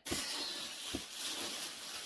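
Wrapping material rustling steadily as an item is handled and unwrapped, with a couple of small clicks, one about a second in.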